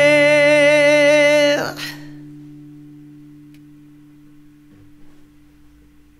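A male vocalist holds the song's final note with vibrato and cuts off about one and a half seconds in. The last acoustic guitar chord keeps ringing and slowly dies away.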